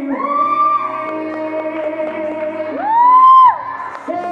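Young male singer holding high wordless notes into a handheld microphone over a pop backing track. About three seconds in, a louder note swoops up, holds for under a second, then drops away suddenly.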